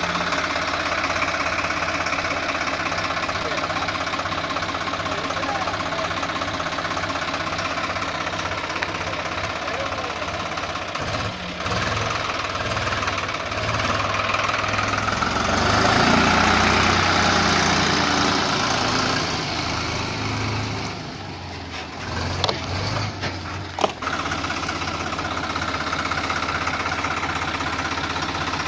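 Swaraj 834 XM tractor's three-cylinder diesel engine running with a loaded trailer hitched, steady at first, then louder for a few seconds from about fifteen seconds in as the tractor pulls away.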